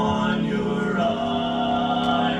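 Barbershop quartet of four men singing a cappella in close four-part harmony; the chord changes about a second in and is then held steady.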